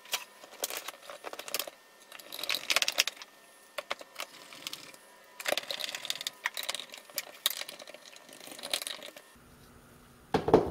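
Small metal hardware and tools being handled at a metal tool chest, clinking and rattling in short clusters, loudest about two and a half seconds in and again near the middle.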